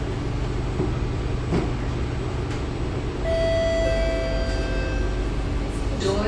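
Steady low hum of a C751B metro train standing in the station with its doors open. About three seconds in, a steady electronic tone sounds for roughly a second and a half.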